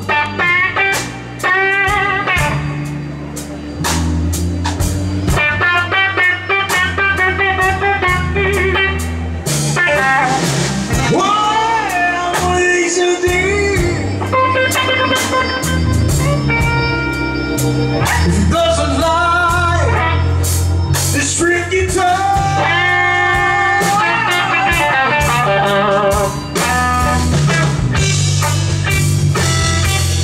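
Live blues band playing loudly: an electric guitar lead with bent, wavering notes over bass guitar and drum kit.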